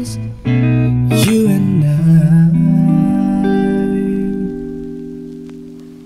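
Music: a last sung phrase over acoustic guitar, ending on a held chord that fades out.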